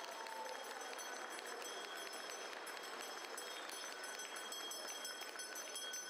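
Audience applauding steadily: a dense, even patter of many hands clapping.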